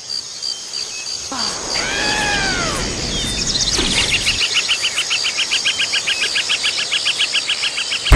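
Cartoon nature ambience: one arching bird-like call about two seconds in, then a fast, even chirping of insects, about six pulses a second, over a steady high hiss.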